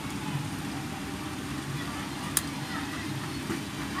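Steady low background hum with one sharp click about two and a half seconds in, as a phone circuit board is handled on a bench.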